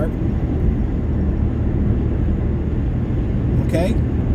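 Steady low rumble of car-cabin noise from the car's engine and road, heard from inside the car.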